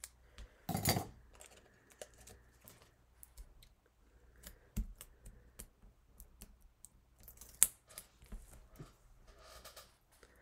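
Light desk-top crafting handling noises: scattered small clicks and taps of tools and paper on a cutting mat while foam adhesive dimensionals are readied. A short rustle about a second in, and one sharp click about three quarters through.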